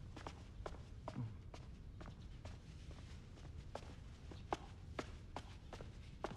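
Faint, short soft taps at an uneven pace of about two a second, over a low steady room hum.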